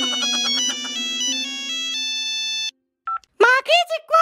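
Mobile phone ringtone: a quick run of bright electronic notes ending in a held chord that cuts off suddenly, then a short beep and a voice speaking.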